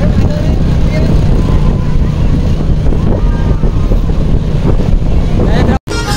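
Wind buffeting the microphone: a loud, steady low rumble. Faint voices sit under it, and the sound cuts out abruptly just before the end.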